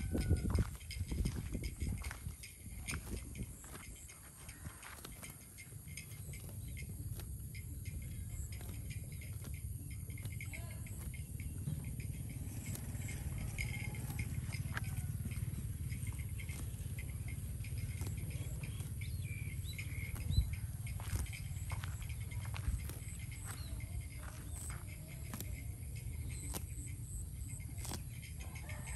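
A zebu cow grazing: repeated short, crisp tearing and crunching as it pulls up and chews grass, over a steady low rumble.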